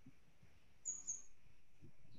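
Two faint, short, high-pitched chirps about a second in, over the quiet hiss of a video-call microphone.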